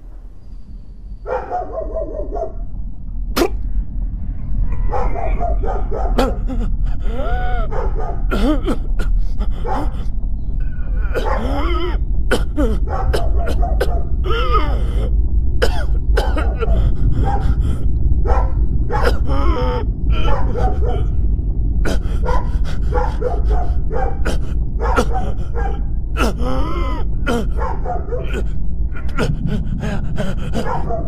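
Repeated short animal yelps and whines, rising and falling in pitch, with sharp clicks among them, over a heavy steady low rumble that swells in over the first few seconds.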